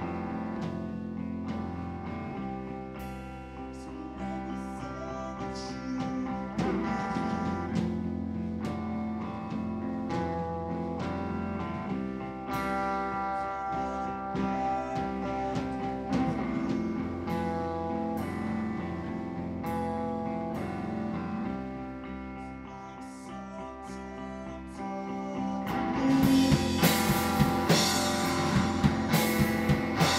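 Live rock band playing an instrumental passage on electric guitar, electric bass and drum kit. Near the end it gets louder, with cymbal crashes.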